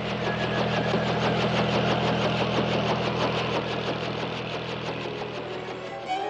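A motor running steadily: a low hum with a fast, even chatter over it.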